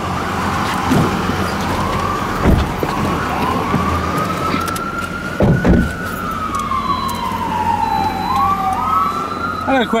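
An emergency vehicle's siren wailing, rising and falling slowly in pitch, each sweep lasting several seconds. A loud thump comes about five and a half seconds in.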